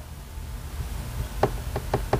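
Low steady room hum with a few faint, short clicks in the second half.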